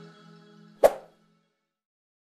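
Background music fading out, with one short sharp percussive hit about a second in.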